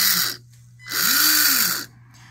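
Small electric ballast pump in an RC submarine's watertight cylinder, run in one direction and then the other. The first run stops about half a second in, and a second run of about a second follows. Each run rises and falls in pitch as the motor spins up and down.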